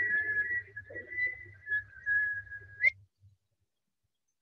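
Whistling: one long, slightly wavering high note over a low hum, cut off by a sharp click about three seconds in.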